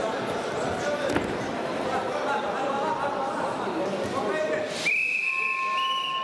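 Referee's whistle: one long, steady blast about five seconds in, stepping slightly higher in pitch near the end, over the voices and chatter of a crowded sports hall.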